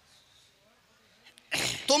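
A short, near-silent pause, then about one and a half seconds in a sudden loud burst of breath close into a microphone, running straight into a man's loud speech.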